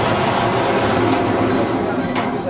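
Large sheet-metal door being pushed open, giving a loud, continuous scraping rumble that fades near the end.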